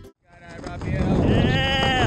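Wind rushing over the microphone under an open tandem parachute. In the second half a person lets out one long, high whooping yell of excitement.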